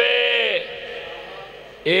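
A man's voice drawing out the last vowel of a word in a sing-song sermon delivery, falling away about half a second in. A short pause follows before he speaks again near the end.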